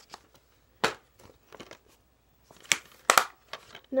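Plastic DVD cases being handled close to the microphone: a few sharp rustling clacks, the loudest about a second in and a pair near the three-second mark.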